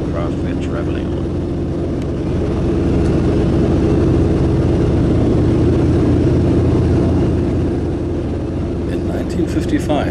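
Lockheed L-1049 Super Constellation's Wright R-3350 radial piston engines and propellers in flight, heard from inside the cabin: a steady, loud, low drone of several deep tones. It swells a little in the middle.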